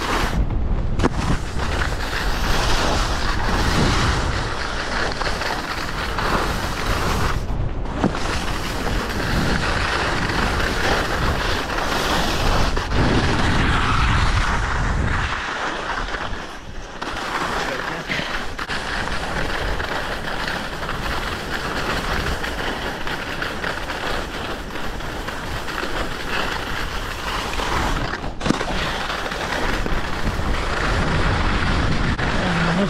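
Wind buffeting the camera's microphone and skis sliding over groomed snow during a downhill run: a steady rushing noise with a low rumble, dropping away briefly a few times.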